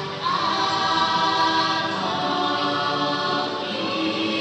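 Ride soundtrack music with choir-like singing in long, held notes, swelling up just after the start.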